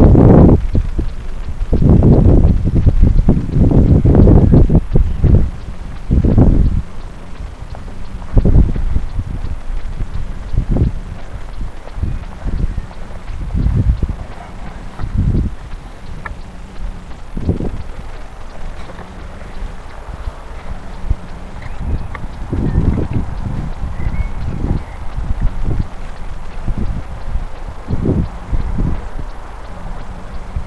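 Wind buffeting the microphone of a sunglasses camera in irregular gusts, heavy and almost continuous for the first several seconds, then weaker and more scattered.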